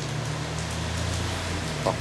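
Steady low hum with an even hiss of background noise, and a voice starting up near the end.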